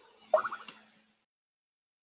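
A single short pitched blip about a third of a second in, fading within half a second, after which the sound cuts to dead silence.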